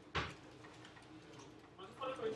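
A single sharp click of a computer mouse button just after the start.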